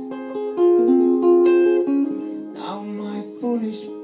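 Steel-string acoustic guitar played slowly with a man singing, his voice drawn out into long held notes.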